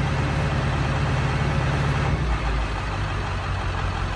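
Ford 7.3 L Power Stroke turbo-diesel V8, fitted with larger aftermarket injectors, idling steadily. It has just been switched from the stock tune, which makes it idle a little rough with these injectors, to the Hydra tune. The low rumble shifts about two seconds in.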